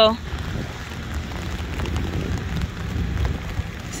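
Steady rain falling on an open umbrella and wet pavement, with a low rumble underneath.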